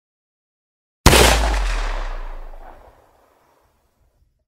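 A single sudden deep boom about a second in, out of silence, dying away over about two seconds: a cinematic impact hit.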